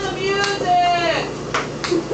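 A person's wordless vocal exclamation with a long falling pitch, among a few sharp clicks of a ping pong ball bouncing, two of them close together near the end.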